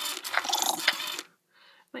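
Baby Alive doll's motorised mouth mechanism whirring and clicking as it drinks from its toy bottle, stopping a little past a second in.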